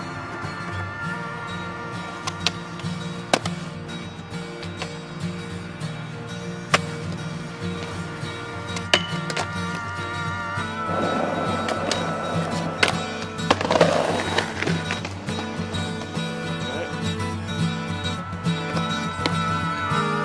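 Acoustic guitar music over skateboard sounds on concrete: several sharp board pops and landings at intervals, and a rough stretch of board noise a little past the middle.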